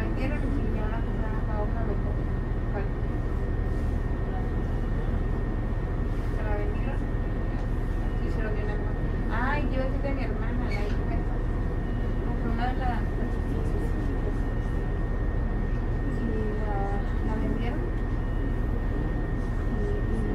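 Cabin noise inside a 2002 New Flyer D40LF diesel city bus: a steady low drone from the running bus, with a thin steady high whine over it.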